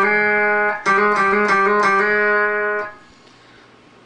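Clean electric guitar playing single sustained notes. The notes change by hammering on and pulling off with the fretting fingers instead of being picked again. The playing stops about three seconds in.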